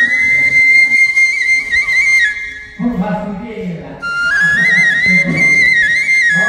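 Background music: a flute melody with quick ornamented turns, breaking off about two seconds in, with voices heard in the gap before the flute comes back near the middle.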